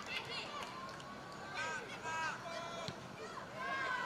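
Faint shouting voices from a youth football match, players and onlookers calling out over outdoor pitch ambience, heard quietly from the match footage.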